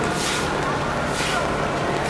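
Footsteps on wet pavement, a hissing splash about once a second, over the steady hum of a large vehicle's engine idling and people talking.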